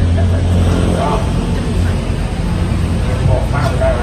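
A man's speech amplified through a microphone and loudspeakers, in short phrases with pauses, over a steady low hum.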